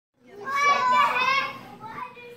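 Young children's voices calling out loudly together for about a second, then dropping to quieter chatter.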